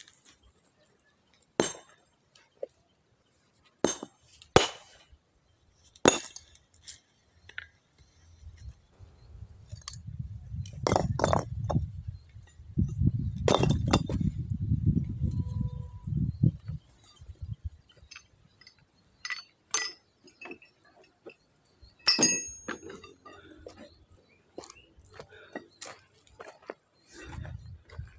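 Scattered sharp clinks of a small sledgehammer striking stone, single strokes at irregular spacing a second or more apart. A low rumbling noise runs through the middle stretch.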